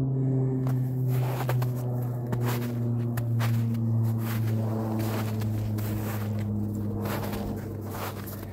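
Footsteps crunching through snow, a few uneven steps, over a steady low drone with a few overtones that is the loudest thing throughout.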